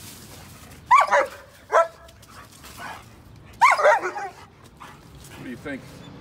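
Dog barking in short, sharp bursts: a pair of barks about a second in, another just before two seconds, and a quick run of barks near four seconds.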